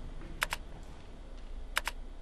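Keyboard keystroke clicks used as a sound effect: two sharp double clicks, each a press and release, about half a second in and again near the end.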